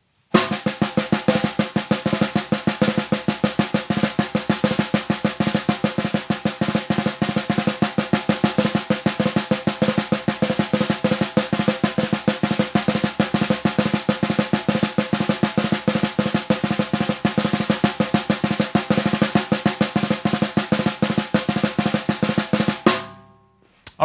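Snare drum played with sticks in a steady 16th-note rhythm with drags (two quick grace notes before a main stroke) worked in, mostly bounced. The playing runs without a break for about 22 seconds and stops suddenly about a second before the end.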